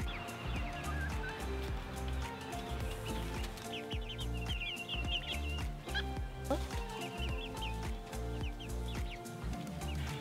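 Chickens in a wire-mesh run giving short, high calls in several brief runs, over steady background music.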